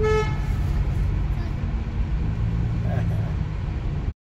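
Steady low road and engine rumble heard from inside a car driving through a tunnel, with one short car-horn toot at the very start.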